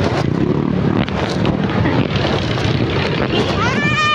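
City street traffic, with motorcycles and scooters passing, heard as a steady noise, with wind buffeting the phone's microphone.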